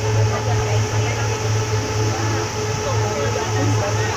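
Speedboat engine running steadily, a low drone with an even throb, heard from inside the covered passenger cabin, with faint passenger voices underneath.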